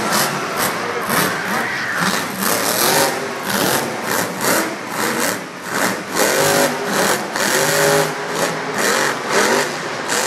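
Grave Digger monster truck's engine revving hard and repeatedly, its pitch rising and falling as the truck drives over a pile of crushed cars.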